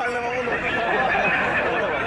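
Men's voices talking continuously; no words can be made out.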